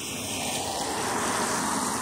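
Steady rushing outdoor background noise, growing slowly and slightly louder.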